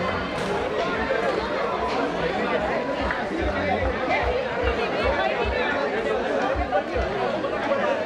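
Several people chattering at once, indistinct, with no single voice standing out.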